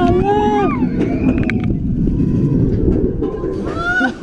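Roller coaster train rumbling along its track, heard from a seat on board, with riders' whoops and shouts over it: a long one at the start, a shorter one about a second in, and a rising one near the end.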